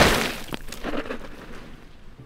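A loud swoosh of crackly rushing noise that swells up, peaks sharply at the start, then fades away over about a second.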